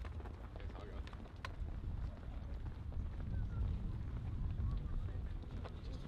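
Outdoor wind rumbling on the microphone, with faint distant voices and a few scattered light clicks.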